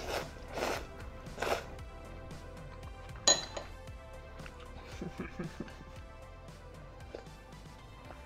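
Noodles slurped from a bowl, twice in the first second and a half, then a sharp clink of a utensil against a ceramic bowl a little after three seconds in, over soft background music.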